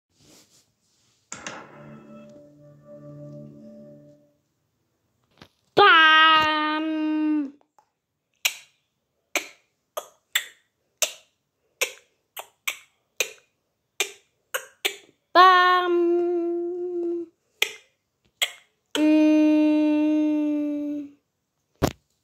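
Finger snapping: more than a dozen sharp single snaps at an uneven pace, set between three long, steady hummed notes.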